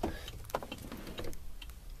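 Quiet truck cab: a steady low hum with a few light clicks, the sharpest about half a second in.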